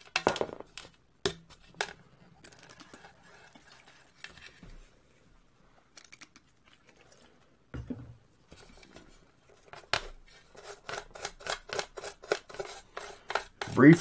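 A rubber-insulated wire and its metal plug being handled in an aluminium pan: a few clicks and knocks against the metal. Then, about three seconds before the end, a run of quick, even scrubbing strokes from a toothbrush working the wire against the pan.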